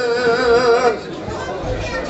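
A man singing a Turkish folk song (türkü), holding a long note with vibrato that ends about a second in. The chatter of people in the room follows.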